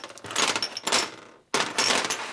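Steel roller rocker arms clinking and clattering against each other and the metal bench top as they are set down and arranged, with brief metallic ringing; a second burst of clatter starts about one and a half seconds in.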